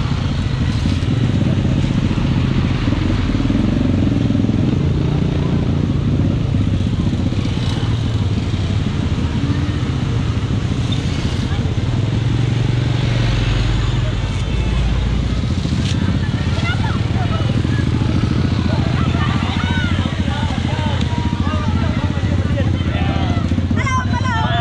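A motorcycle engine running steadily on the move, with people's voices heard over it, mostly in the second half.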